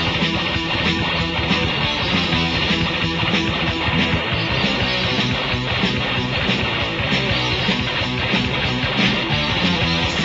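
A heavy metal band playing an instrumental passage from a 1986 demo recording, led by electric guitar, dense and steady with no vocals.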